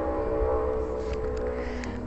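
Background music: a sustained chord of several held tones over a low bass, without a clear beat.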